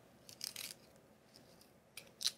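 Faint scraping of a carrot being twisted against the blades of a hand-held plastic vegetable-flower cutter, which shaves it to a point like a pencil sharpener. A short burst of shaving comes about half a second in, with a few lighter scrapes later.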